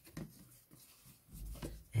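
Quiet rustling and light handling of stiff paper postcards being shuffled in the hands, with a few faint soft knocks.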